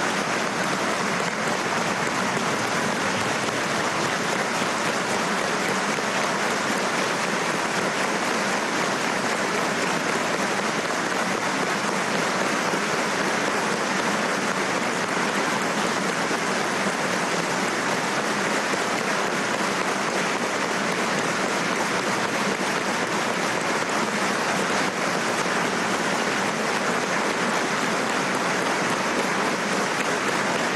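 A large crowd of deputies applauding in a long, unbroken ovation, steady in loudness throughout.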